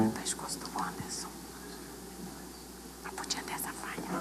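Faint whispering and low murmured voices in a quiet room, with soft hissed 's' sounds standing out.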